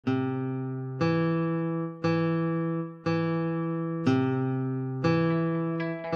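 Tanpura drone: its strings are plucked one after another, about one note a second, six times. Each note rings with a bright, buzzing wealth of overtones and fades into the next.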